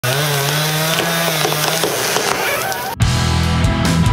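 A chainsaw running, its pitch rising and falling, cut off suddenly about three seconds in by loud rock music with heavy bass and electric guitar.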